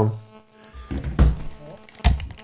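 Dull thunks and bumps of studio equipment being handled while a phone call is put through to air, ending in a sharp click; faint steady tones sit underneath.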